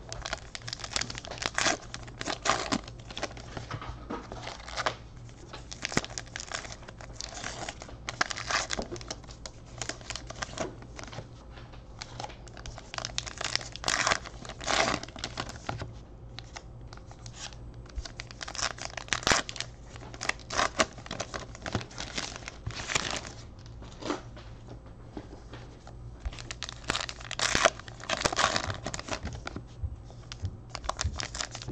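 Topps Allen & Ginter trading-card pack wrappers crinkling and tearing, with cards being handled and stacked, in irregular bursts.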